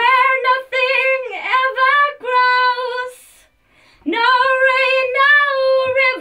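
A woman singing solo into a studio vocal microphone in a high register, with no backing: two phrases of held notes with small slides between them, broken by a pause of about a second, three seconds in.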